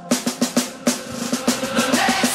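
Snare-drum build-up in a K-pop track: a run of quick, even drum hits, about six or seven a second, with no vocal over it.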